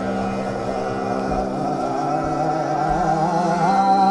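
Hindustani classical tappa in raag Kafi: a man singing a continuous line of fast, wavering ornaments, shadowed by a violin, over a steady drone. The sung line grows louder near the end.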